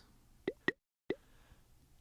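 Three short, quiet pop sound effects of the kind used in animation, each a quick upward-sweeping blip, spread over about two-thirds of a second.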